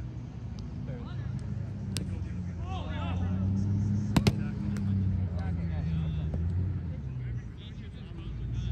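A roundnet (Spikeball) serve: two sharp slaps in quick succession about four seconds in, the hand striking the small rubber ball and the ball bouncing off the trampoline net. Under it runs a steady low rumble.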